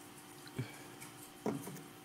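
Someone drinking from a plastic water bottle: two faint gulps, about half a second in and a second and a half in, the second the louder.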